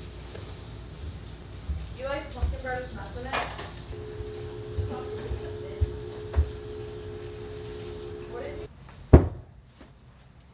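Dull footsteps thudding up carpeted stairs, about two a second, with a steady low hum behind them. Near the end the background drops away and a single sharp knock is the loudest sound.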